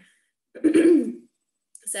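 A woman clearing her throat once, about half a second in.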